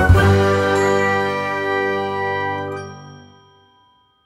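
Final chord of a chiming, bell-like music jingle, struck once and left to ring out, fading away over about three and a half seconds.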